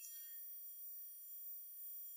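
A pause between sentences, nearly silent: only a faint, steady electronic tone, like the hum of a sound system, under the room tone.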